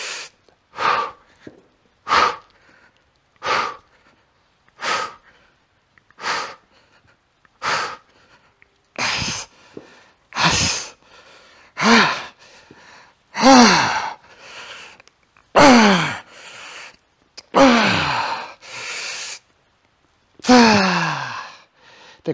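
A man's sharp, forceful exhalations, one with each barbell bench press rep, about every second and a half. About halfway through they become longer, louder strained grunts that fall in pitch as the set gets hard.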